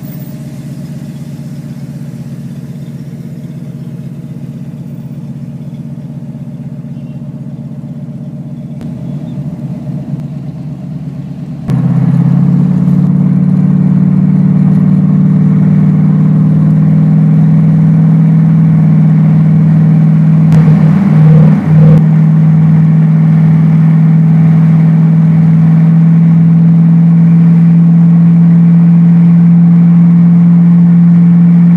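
Car engine heard from inside the cabin, droning steadily as the car pulls out, then suddenly much louder from about twelve seconds in as it speeds up onto the highway and holds a steady cruise. A brief dip in the sound comes about two-thirds of the way through.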